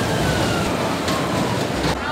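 Children's ride in motion, heard from on board: a loud, steady rushing noise with faint falling tones under it.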